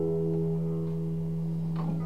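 Nylon-string classical guitar's final chord ringing out after the last strum, its notes held steady and slowly fading, with a faint tap on the guitar near the end.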